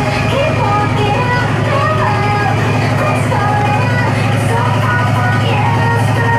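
UK hardcore dance music playing loud over a club sound system: a heavy bass held steady throughout, with a voice gliding up and down over it.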